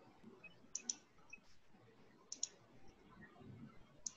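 Computer mouse button clicked twice, about a second and a half apart, each click a quick press-and-release pair of ticks, over a quiet room.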